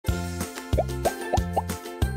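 Upbeat animated-intro music with a bouncy bass beat, and four quick rising plop sounds about a second in.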